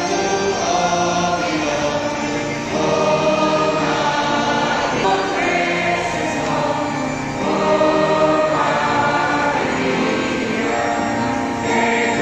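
A choir singing a hymn in long held phrases, with a short break between phrases about every four to five seconds.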